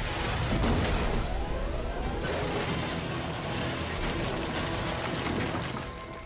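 Cartoon sound effects of a space shuttle crash-landing: a loud impact with deep rumble, heaviest about a second in, then clattering debris noise that eases off after about two seconds.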